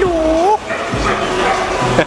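A puppy gives one short whine, about half a second long, dipping and then rising in pitch, over background music.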